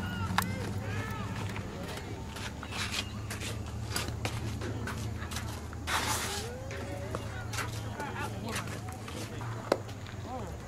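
Outdoor ambience of a youth baseball practice: faint distant voices of players and coaches, footsteps and scuffs on infield dirt, and scattered sharp clicks over a steady low hum. A short rushing scrape comes about six seconds in, and a sharp click comes near the end.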